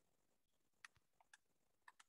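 Faint computer mouse clicks: about five short clicks in the second half, over near-silent room tone.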